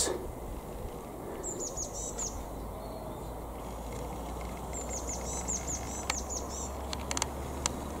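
A small songbird singing two short bursts of quick, repeated high notes, over a steady low rumble. A few faint clicks come near the end.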